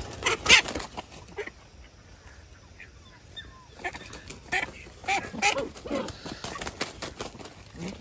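A run of short animal calls with bending pitch in the second half, after a few scuffs and rustles near the start.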